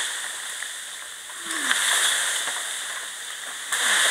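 Swishing rustle of a leafy bamboo culm being dragged through grass, swelling twice.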